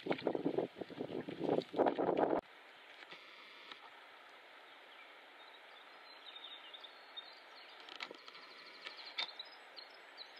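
Wind buffeting the microphone over choppy water against a moving canoe, loud and gusty, which cuts off suddenly about two and a half seconds in. After that there is only a quiet steady hiss with a few faint high ticks.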